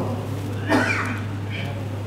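A man's voice speaking briefly, a short utterance under a second in length, in a pause of a sermon, over a steady low hum.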